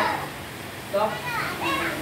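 Children's voices, indistinct talk in a small group, quiet for the first second and picking up about a second in.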